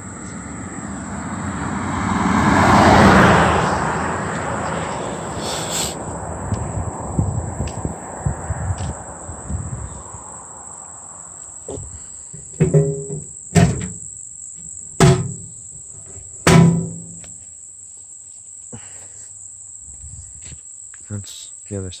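A vehicle passing at speed on the road, its tyre and engine noise building to a peak about three seconds in and fading away over the next several seconds. A steady high insect drone runs underneath. A dozen seconds in come several sharp metallic clanks from a roadside mailbox being handled.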